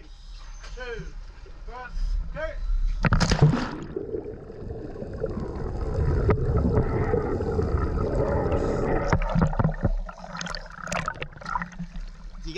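A scuba diver drops from the boat into the sea with a sudden splash about three seconds in. This is followed by several seconds of rushing, gurgling water and bubbles while he is underwater, then choppier splashing as he comes back up near the end.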